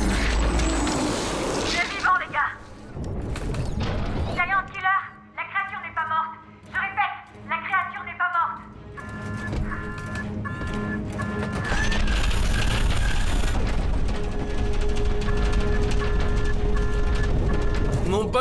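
Action-film sound mix: a loud rumble and crash at the start, then a run of strained vocal cries, then short electronic beeps, about two a second, over a deep rumble and a steady hum.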